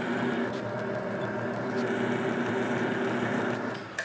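Electric leather edge-burnishing machine running with a steady motor hum as strap edges are burnished, winding down a little before the end.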